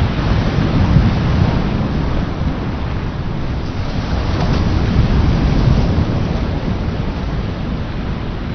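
Loud, steady low rumbling noise with a hiss over it, without a break, the soundtrack of grainy, foggy footage of an island.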